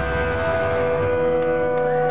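A punk band's amplified electric guitars ringing out on a held final chord, several steady sustained tones hanging unbroken.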